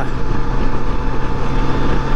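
Honda Gold Wing GL1800 trike's flat-six engine running steadily at cruising speed, a low even hum under constant wind and road noise.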